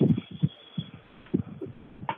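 A phone caller's open line carrying a series of low, irregular thumps, about six in two seconds, muffled by the line's narrow sound.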